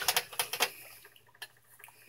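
Hatching eggs clicking against each other and against a plastic incubator tray as they are handled: a quick run of light clicks, then a few faint ones about halfway through.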